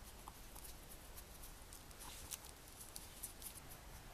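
Faint, scattered light clicks and ticks from hands fitting small hardware (screws and a zip tie) while assembling a potato and wooden base, over low room hum.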